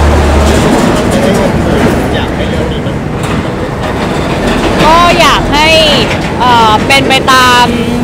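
Loud steady noise of passing road traffic. Someone coughs about two seconds in, and voices talk over it from about five seconds in.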